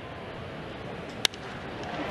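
Ballpark crowd ambience, steady and low, cut by a single sharp crack of a wooden bat hitting a pitched baseball about a second and a quarter in.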